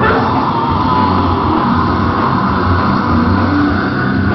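Metal band playing live: distorted electric guitars and drums in a loud, dense, unbroken wall of sound.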